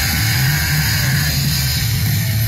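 Loud live punk-rock music from a band playing through festival speakers, bass-heavy and distorted, heard from inside the crowd.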